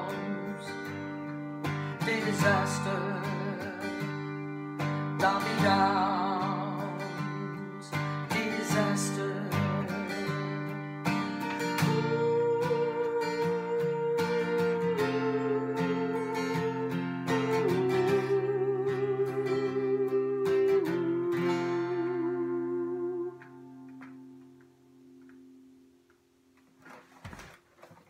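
Woman singing to a strummed acoustic guitar, the closing bars of a country ballad. The second half turns to long, wavering held notes over ringing chords, and the music ends about 23 seconds in, followed by a few faint knocks.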